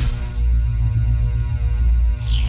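Loud, steady deep drone from the channel's logo outro soundtrack, with a whoosh dying away just after the start.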